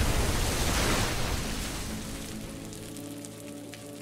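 The tail of an explosion sound effect: a loud noisy blast fading away over the first two seconds. Music with steady held tones comes in underneath and carries on quietly.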